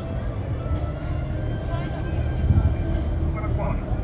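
Low, uneven rumble from riding in a small ride boat on the water, with faint music and distant voices over it.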